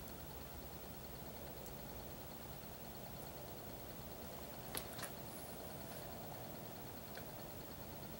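Experimental G1 generator running faintly and steadily, with two small clicks a little under halfway through.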